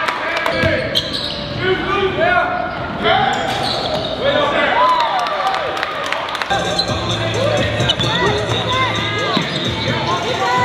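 Basketball game in a gym: sneakers squeak again and again on the hardwood court, with the ball bouncing and players' voices in the hall. A low steady drone comes in about six and a half seconds in.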